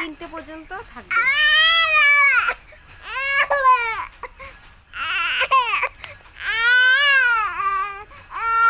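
A baby crying in four loud, long wails that rise and fall in pitch, with short breaks for breath between them, upset at having its face rubbed with cream.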